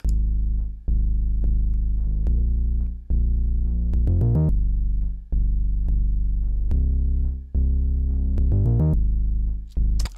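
Synthesized bass line from Ableton Live 12's Meld instrument, playing long low notes through a chord progression. Twice, near the middle and near the end, a chord is broken into a quick run of 16th notes by the Arpeggiate transform.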